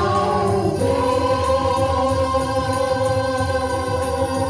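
A mixed group of four singers, men and women, sing together through microphones and a PA speaker. They move to a new note about a second in and hold it as one long closing note of the song.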